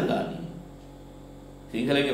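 A man's speech trails off, then a pause filled by a steady low electrical mains hum, and the speech starts again near the end.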